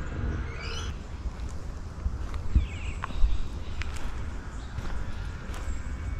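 Footsteps on a dirt and leaf-litter bush track, over a low rumble, with a few sharp knocks a few seconds in. Short high bird calls come near the start and again about two seconds in.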